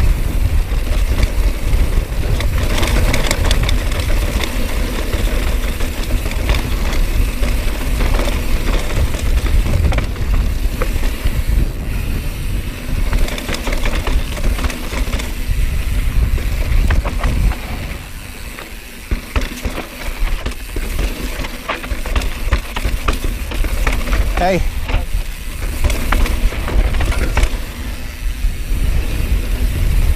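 YT Jeffsy carbon mountain bike descending dry, rocky dirt singletrack: tyres rumbling over dirt and stones and the bike rattling and clicking over the bumps, with wind buffeting the microphone. The noise eases for a couple of seconds a little past halfway, and a short pitched sound rises and falls about three quarters of the way through.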